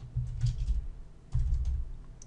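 Typing on a computer keyboard in two short runs of keystrokes, about a quarter of a second in and again just past a second. Each run has a dull low knock under the light key clicks.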